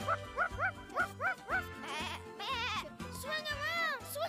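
Cartoon soundtrack: a quick run of about seven short rising pitched calls in the first second and a half, then a wavering tone, then longer arching swoops near the end, over light background music.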